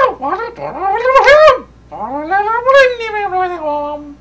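A puppet character's high, wordless whining voice: two long wails, the first rising and arching over about a second and a half, the second rising and then falling away.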